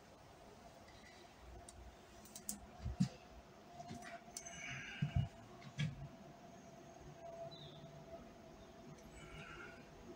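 Faint, quiet work sounds: a handful of small knocks and taps a few seconds in, with two brief high chirps, over a faint steady hum.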